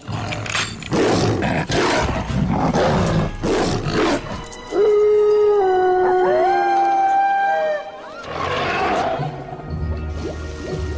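Film sound effects of a werewolf: rough growls and snarls, then a long held howl about five seconds in that lasts about three seconds and dips slightly in pitch, followed by another growl, with music underneath.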